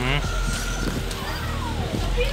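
Indistinct voices of people talking nearby, over a steady low rumble.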